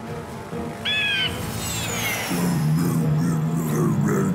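Cartoon soundtrack: background music with a short bird-like cry about a second in, followed by a long falling whistle and, from about halfway, a low wavering tone.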